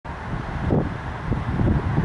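Wind buffeting the microphone: a steady low rumble with uneven gusts.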